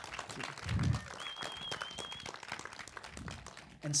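Small audience applauding: a thin patter of clapping, with a low thump about a second in and a brief high wavering tone after it.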